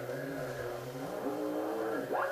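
Native American chanting picked up off the air through the antenna and receiver while the signal generator is tuned near the antenna's resonant frequency; it sounds thin and radio-like, the chanted pitch stepping up and down over a steady low drone.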